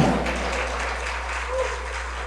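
Congregation applauding, the clapping fading away over a steady low hum.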